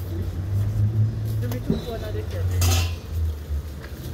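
Street-market background: a steady low rumble, faint voices, and a few light clicks, with a brief loud rustle about two and a half seconds in.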